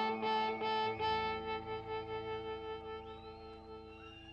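Live band music: a long held chord with a sustained lead note, pulsing at first and then fading away over the last couple of seconds.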